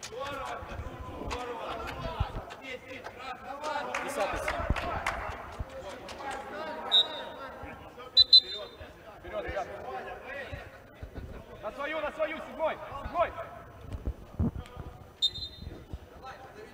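Footballers' voices calling and talking across a large indoor football dome, with a few sharp knocks of the ball.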